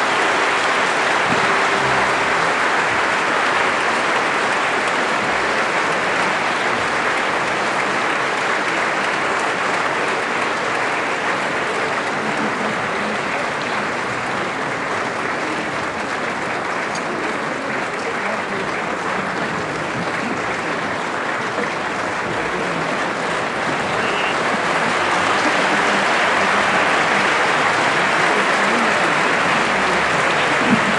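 Theatre audience applauding, a dense, steady clapping that eases slightly midway and swells again about twenty-five seconds in.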